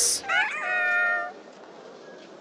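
A cartoon character's short cat-like cry: a rising onset, then a held tone lasting about a second. A brief hissing swish comes just before it.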